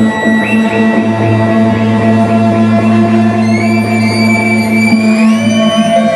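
Live band playing a loud, droning noise passage: layered sustained tones with no drum beat, several of them sliding upward in pitch in the second half.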